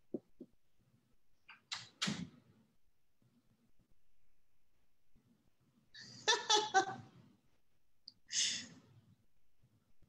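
A woman laughing briefly about six seconds in, with a few soft breaths and small clicks around it.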